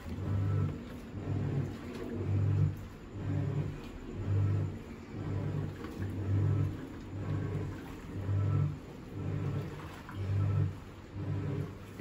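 Hisense WTAR8011G 8 kg top-load washing machine in its wash cycle: the motor hums in short bursts about once a second as it drives the pulsator back and forth, churning the wash.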